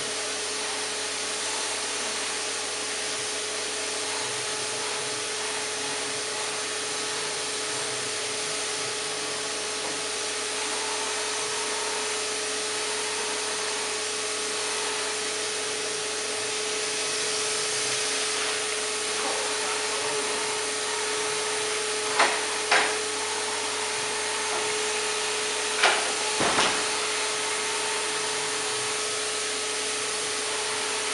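HVLP paint spray gun and its air supply running steadily: a constant hiss over an even whine. Two pairs of sharp knocks come in the last third.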